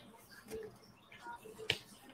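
A few faint clicks in a quiet room, with one sharp click near the end.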